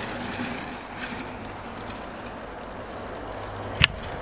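Steady rushing outdoor noise with a faint low hum, and one sharp click near the end.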